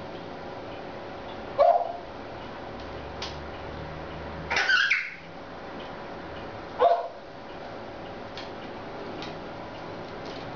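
A pet animal's short calls, three brief ones a couple of seconds apart, the middle one longer and higher-pitched.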